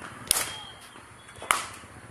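Two sharp knocks of cricket balls being struck at practice nets, about a second and a quarter apart, each with a short ringing tail.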